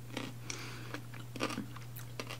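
Close-miked chewing of a mayonnaise-dressed Olivier salad: a few short, wet, soft crunching mouth sounds, over a steady low hum.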